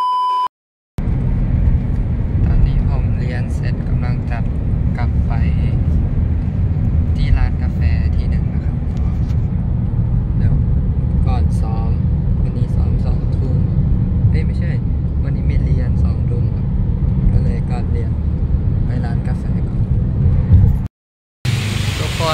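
A brief steady test-tone beep at the very start, then the steady low rumble of a car's interior while it is being driven, heard from the back seat, with faint voices underneath.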